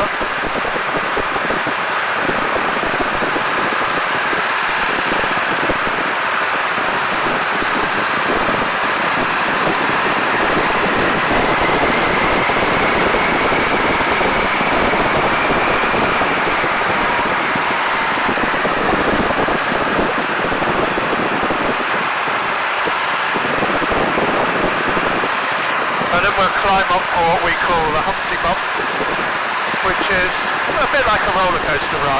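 Biplane's engine and propeller running at high power, under a heavy rush of wind over the microphone. A faint whine rises slowly and falls back in the middle, as the aircraft speeds up to about 110–115 miles an hour.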